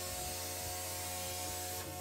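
CNC plasma cutter torch cutting through a thin painted metal lid: a steady hiss with steady tones underneath.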